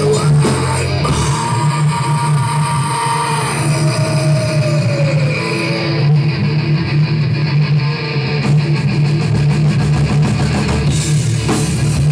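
Heavy metal band playing live: distorted electric guitars over a drum kit in an instrumental passage, with fast, even cymbal hits in the second half.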